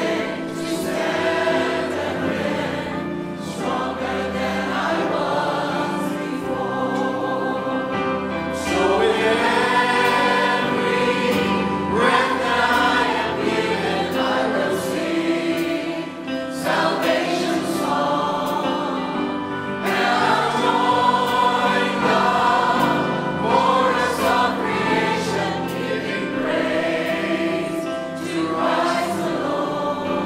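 Mixed choir of men and women singing a hymn, the sound swelling louder about a third and two thirds of the way through.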